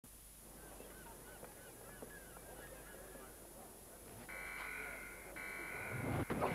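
Faint birds calling, many short calls that rise and fall in pitch, over a low background. About four seconds in, a steady high tone starts, louder than the calls, breaking off briefly near the end.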